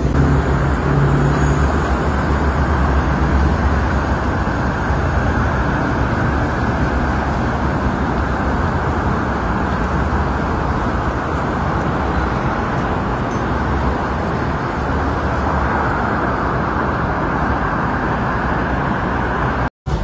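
Steady road traffic noise from a city street, with a heavier low rumble in the first few seconds. It cuts out for a moment near the end.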